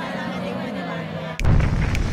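An explosion goes off about one and a half seconds in: a sudden loud blast with a deep rumble that carries on.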